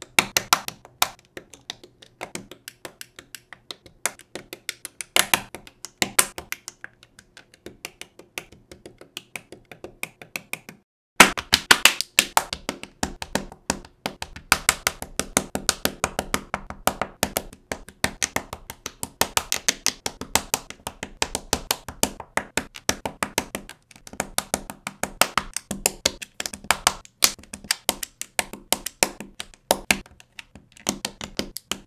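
Plastic LEGO bricks clicking and snapping together, a rapid run of small sharp clicks several a second, with a short break about eleven seconds in before the clicking resumes more densely.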